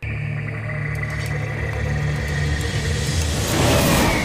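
Dark, ominous drama score: a deep rumbling drone that swells to a loud crescendo near the end.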